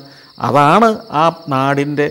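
Night insects trilling steadily in a high, unbroken band beneath a man's speech.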